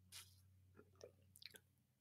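Faint sounds of drinking water through a straw: a short slurp just after the start, then a few soft swallowing clicks.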